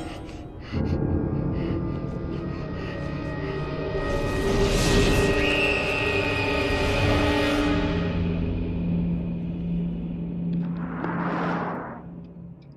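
Eerie horror-film score of sustained, held tones. A rushing swell of noise rises about four seconds in and fades out by about eight seconds, and another builds up just before the end.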